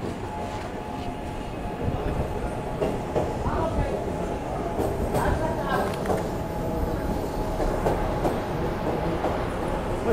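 SEPTA Market–Frankford Line train in the station: a steady rumble that grows louder about two seconds in, with many short rattling clicks.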